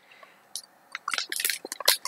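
A quiet sip from a ceramic tea mug, then a run of small clicks and crackles from about a second in as the mug is lowered toward the table.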